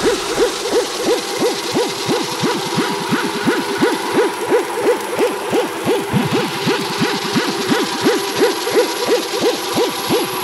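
Techno in a breakdown with the kick drum dropped out: a short percussive synth note that falls in pitch repeats evenly, about four times a second, over a faint hiss.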